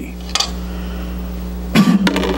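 A man blowing a long, steady breath into the mouth of an empty glass bottle, trying to blow a small ball of paper inside. Near the end there is a sudden loud burst with a short vocal sound.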